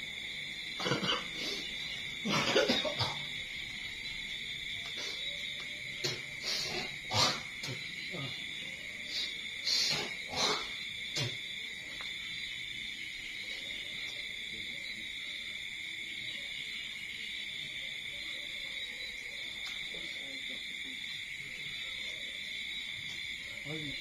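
A steady, high-pitched night insect chorus drones without a break. A few short, sudden noises come in the first half, the loudest about two and a half seconds in, and the second half is only the drone.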